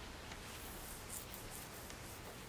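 Faint rustle of a colouring book's paper pages being turned by hand, with a couple of soft swishes about a second in.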